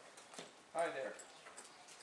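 Soft hoofbeats of a palomino Quarter Horse moving through arena sand, faint, short knocks under a man's brief spoken greeting.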